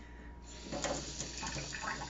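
Kitchen faucet turned on about half a second in, water running steadily into a stainless-steel sink and over a fish skin held under the stream.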